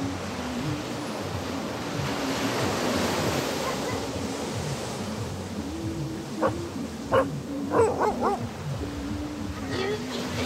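Small waves washing steadily onto a sandy beach under soft background music, with several short barks from about six and a half to eight and a half seconds in.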